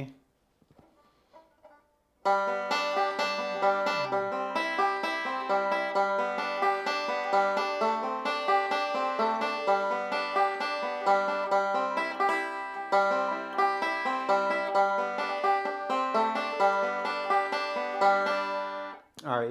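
Five-string open-back banjo picked with finger picks: after a near-silent pause of about two seconds, a continuous run of quick picked notes at an even level.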